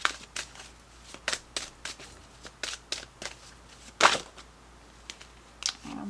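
A deck of Mystical Wisdom oracle cards being shuffled by hand, with irregular flicks and slaps of the cards. The loudest slap comes about four seconds in.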